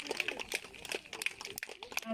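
Faint chatter of an outdoor crowd of spectators, with many short sharp clicks and knocks scattered through it.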